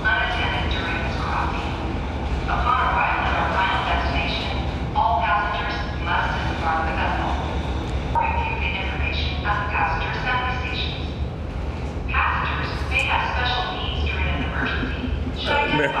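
A safety announcement playing over a ferry's public-address loudspeakers, a voice talking steadily, over the ferry's steady low engine hum.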